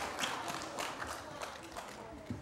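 Audience applause thinning out and fading away.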